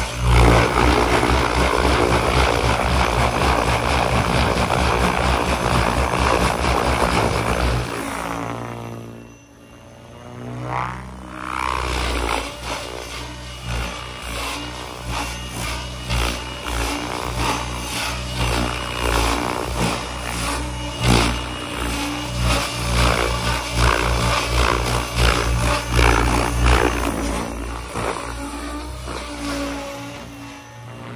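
ALIGN TB70 V2 electric RC helicopter flying hard aerobatics at 1800 rpm headspeed: a loud, steady main-rotor buzz with a high gear whine, with blade noise rising and falling as the collective pitch changes through the manoeuvres. The sound falls away for a few seconds about eight seconds in, then comes back with a sweeping change in tone as the helicopter moves past.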